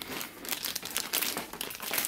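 Soft plastic wrappers of a stack of baby wipe packs crinkling irregularly as they are handled and carried.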